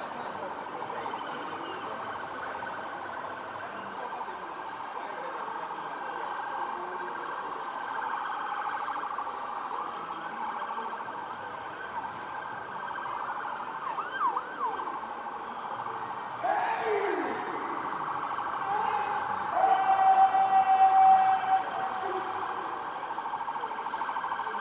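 Emergency vehicle siren sounding continuously on a fast rising-and-falling yelp, with brief pitch glides in the middle and a louder steady tone about twenty seconds in.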